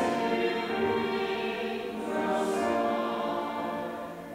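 Church choir singing a slow, sustained sacred piece in several parts, with a short break for breath about halfway through before the next phrase.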